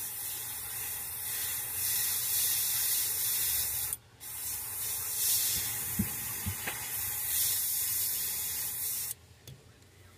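Gravity-feed airbrush spraying paint over a stencil in a steady hiss, with a short break about four seconds in, then spraying again until it cuts off about nine seconds in.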